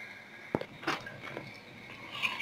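A few sharp clicks and light knocks as a cooking pot is handled and set on the stove: one crisp click about half a second in, then softer knocks.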